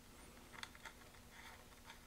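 Near silence: room tone with a faint steady hum and a few faint ticks as a brass SMA connector is fitted onto the spectrum analyzer's input port.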